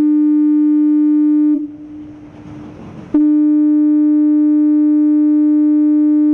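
Harbour foghorn (nautofono) sounding its fog signal, a loud, steady, low horn tone. The tone breaks off about a second and a half in, leaving a short stretch of hiss, then sounds again and holds.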